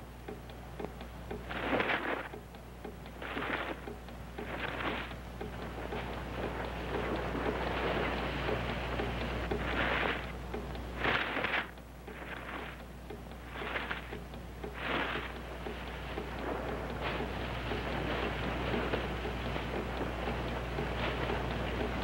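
Rustling and crashing of brush and undergrowth in irregular louder surges, over a hiss that slowly grows louder: something large pushing through the trees. A steady low hum runs underneath.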